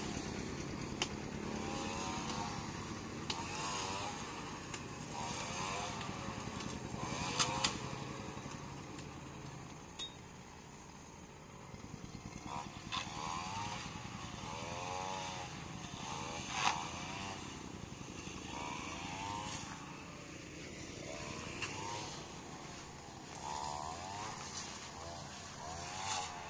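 Road traffic: vehicles passing one after another, their sound swelling and fading, with a few sharp clicks along the way.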